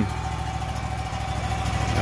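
Wood-Mizer LT35 sawmill's engine idling steadily while it warms up, its firing pulses even and regular.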